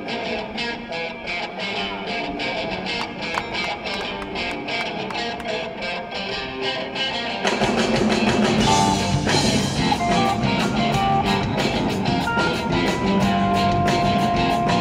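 Live blues-rock band: an electric guitar plays a rhythmic riff over a steady pulse, and about halfway through the rest of the band comes in and the music gets fuller and louder.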